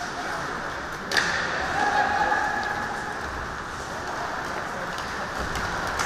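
Ice hockey game in an indoor rink: steady arena noise of play on the ice, with a single sharp clack about a second in. A faint held call follows shortly after.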